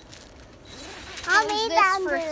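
A child's voice making a loud wordless sound with a quickly wobbling pitch, starting about halfway through after a quiet first second.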